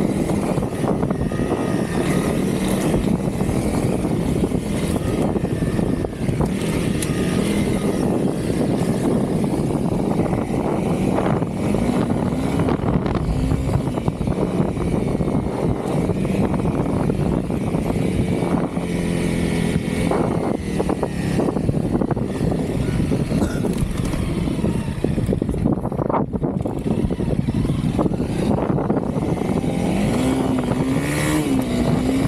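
Honda CRF300L motorcycle engine running under way, its pitch rising and falling a few times with the throttle, under a heavy steady rumble of wind on the microphone.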